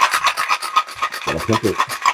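Cocktail shaker being shaken hard, with ice rattling inside it in a fast, steady rhythm.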